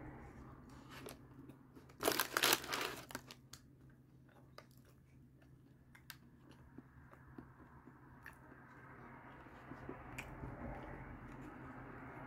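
A person chewing a chicken nugget with the mouth close to the microphone. There is a loud crackly crunch about two seconds in, then faint wet mouth clicks as the chewing goes on.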